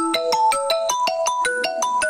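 A phone ringtone: a fast, marimba-like electronic melody of quick struck notes, about six a second, played loud.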